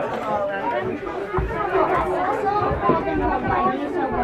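Several people chatting at once, their voices overlapping, with a low rumble in the middle.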